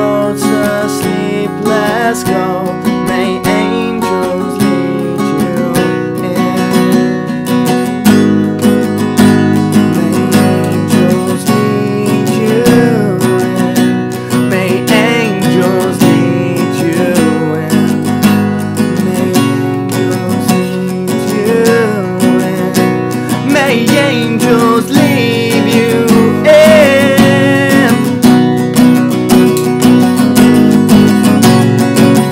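Acoustic guitar strummed in a steady rhythm, with chords ringing on.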